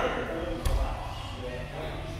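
A dull thump of grapplers' bodies landing on a padded mat about half a second in, over people's voices in a large room.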